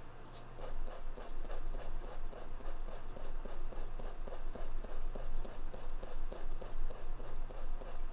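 Pentel Sign Pen brush marker's felt tip scrubbed back and forth on watercolor paper, a steady run of short, scratchy strokes about three a second.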